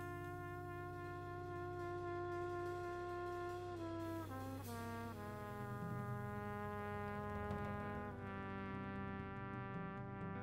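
Live jazz trumpet playing long held notes, with a falling run of notes about four seconds in. Underneath are sustained organ tones and cymbals from a drum kit.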